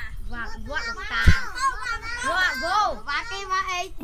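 Young children's voices talking and calling out over one another in a kindergarten class, with a single low thump about a second in.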